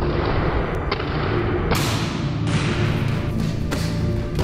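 Dark cinematic background music overlaid with several boxing punch impacts, sharp thuds each followed by a short whoosh-like hiss, spaced roughly a second apart.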